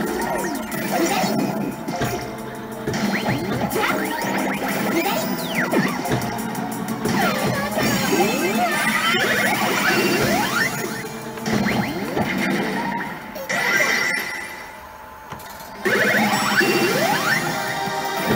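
Universal 'Puella Magi Madoka Magica 2' pachislot machine playing its game music and sound effects during a bonus stage: jingles, sliding effect tones and crash hits. A short quieter stretch comes about three quarters of the way through, then the sound jumps straight back up loud.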